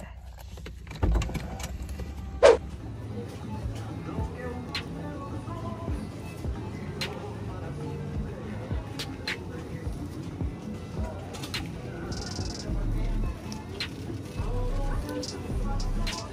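Background music with a steady low line, over the clatter of a loaded shopping cart being pushed through a supermarket aisle and faint voices. A single sharp knock sounds about two and a half seconds in.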